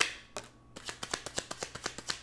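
A tarot deck being shuffled in the hands: a sharp snap of cards at the start, then a quick run of card clicks, several a second.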